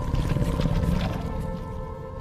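A low, rough rumbling sound effect over a sustained music drone; the rumble is loudest in the first second and then fades.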